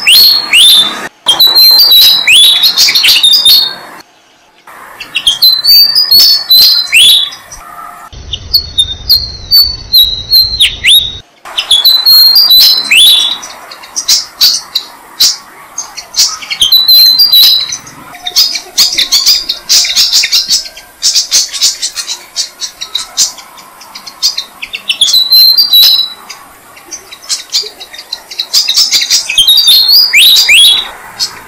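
Malaysian pied fantails calling at their nest: repeated bursts of high, squeaky chirping phrases, with stretches of rapid chirping in the middle. The sound cuts off abruptly several times in the first dozen seconds.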